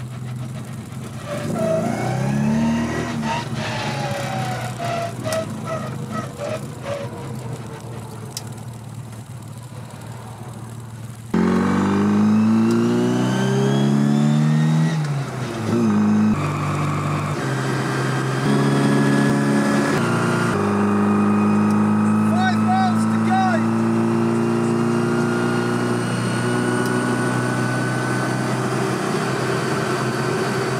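Classic Mini's A-series four-cylinder engine heard loud from inside the small cabin while driving. About eleven seconds in it suddenly gets louder, and the engine note climbs and drops a few times before settling into a steady drone.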